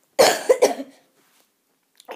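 A boy coughing into his sleeve: a quick run of three coughs within the first second.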